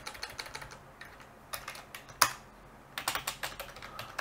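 Typing on a computer keyboard: short runs of keystrokes with pauses between them, and one louder key strike about two seconds in.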